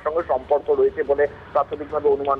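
Speech only: a man talking over a narrow-sounding phone line.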